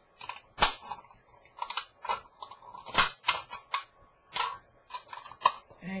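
Scissors snipping through a thin aluminium soda can: a series of sharp, irregular clicks, about ten over the few seconds, the loudest about half a second and three seconds in.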